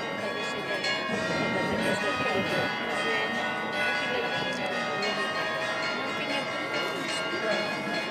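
Church bells ringing continuously, their tones overlapping and sustained, over the murmur of a crowd talking.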